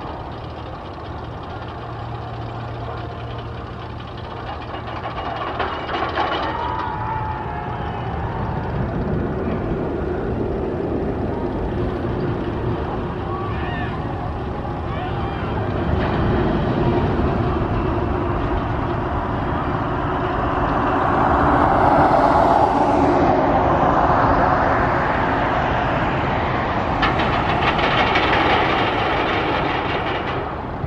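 Steel Eel, a Morgan steel mega coaster, with a train rolling along its track: a steady rumble that grows louder around halfway and is loudest a little past two-thirds of the way.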